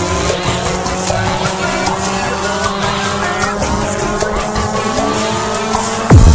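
Dark psytrance (darkpsy) track in a beatless breakdown: steady held synth drones with many pitch-gliding electronic effects sliding up and down over them.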